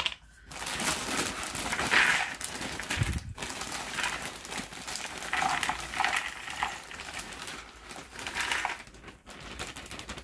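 Plastic bag crinkling as Ravensburger cardboard jigsaw pieces are tipped out of it into the box, the pieces pattering down as a dense stream of small clicks with several louder surges.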